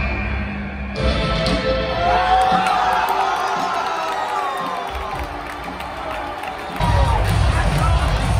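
Wrestling entrance music booming over a stadium PA with a large crowd cheering. The sound jumps abruptly about a second in, and again near the end, where heavy bass comes in.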